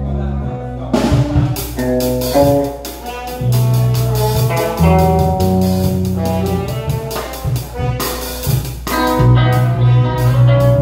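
Live band jamming: drum kit, bass guitar and electric guitar, with held lead notes over a steady groove. The drums come in about a second in.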